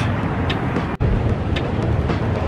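City street traffic noise, a steady rumble of passing vehicles with wind buffeting the microphone. The sound briefly drops out about a second in.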